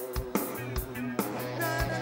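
Live rock band playing: drum kit hits over steady bass notes, electric guitar, and a held melody line on top.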